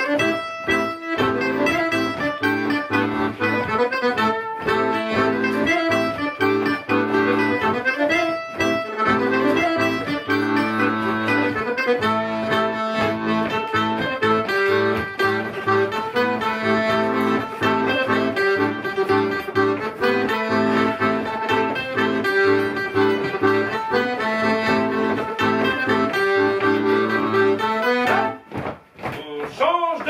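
Live band playing a Poitou folk dance tune at a steady dance tempo. The music breaks off for about a second near the end.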